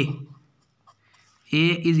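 Faint strokes of a felt-tip marker writing on paper in a short pause between spoken words, with a voice at the very start and again near the end.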